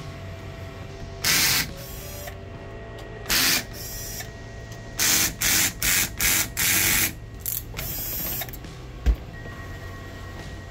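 Cordless drill-driver spinning in short bursts as it backs screws out of a metal casing: two separate bursts, then a quick run of five, then a longer one. A single sharp knock comes near the end.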